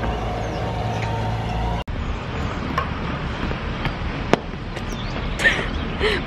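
Road traffic: a vehicle engine runs with a steady low hum that breaks off abruptly about two seconds in. Even street noise follows, with one sharp click past the middle.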